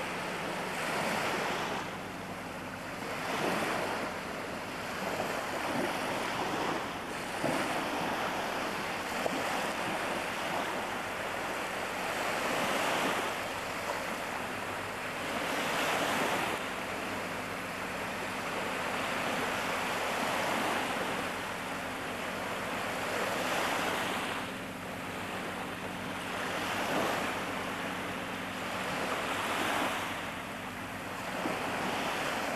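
Sea waves washing, the noise swelling and easing every few seconds, with wind buffeting the microphone. A faint steady low hum runs underneath.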